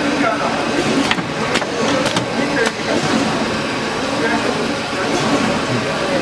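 Paper straw making machine running: a steady mechanical noise with several sharp clicks in the first few seconds, under voices.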